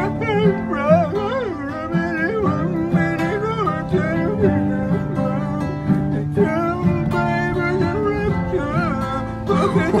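A man singing with a wavering, warbling voice that sounds like Scooby-Doo, over a plucked acoustic guitar accompaniment.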